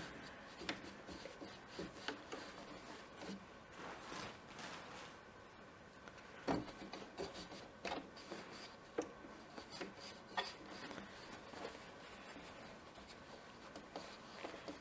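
Faint rustling and rubbing of quilt stuffing and cotton fabric as a handful of stuffing is pushed into a puff-quilt pocket, with a few soft taps.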